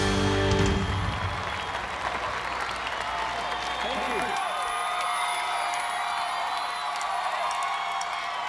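A live band's music ends about a second in, giving way to a large crowd applauding and cheering, with scattered voices.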